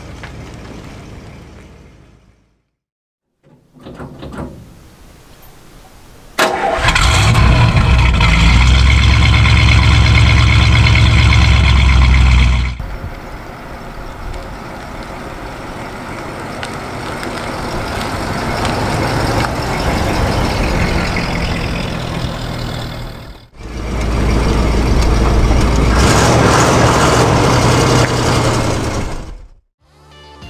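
1956 Buick Special's 322 cubic-inch Nailhead V8 running, heard in several separately cut shots: a short burst about four seconds in, loud deep running from about six to thirteen seconds, then the car driving up with the sound growing louder, and loud again near the end.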